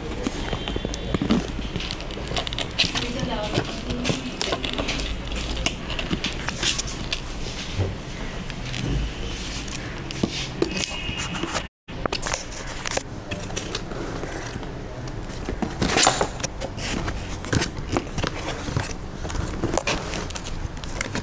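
Cardboard shipping box being handled: rustling, scraping and many scattered taps and crackles, with voices in the background.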